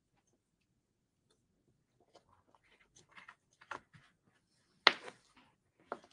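Beads being handled and threaded onto a twine strand: faint scattered clicks and taps starting about two seconds in, with one sharper click near the end.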